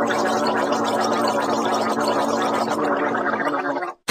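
Wet, bubbling gargle with a steady low hum held beneath it, stopping abruptly shortly before the end.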